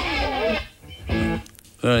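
A guitar sounds twice in the band's studio setup: a strummed chord about two-thirds of a second long, then a second shorter chord about a second in. It comes as a brief flourish when the guitarist is introduced.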